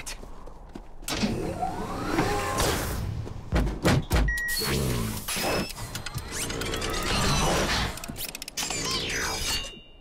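Cartoon mechanical sound effects of a giant robot mech unpacking and powering up: whirring servo whines that rise and fall, clanks and knocks, with a couple of heavy thuds about four seconds in, over background music.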